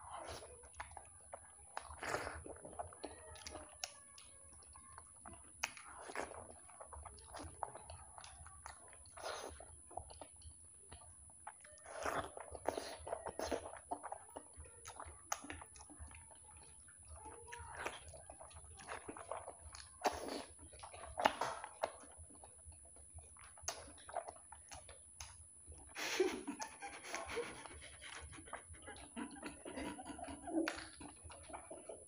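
Two people eating soft fried eggs by hand: irregular, faint wet chewing and lip-smacking sounds, with a busier stretch of mouth noises near the end.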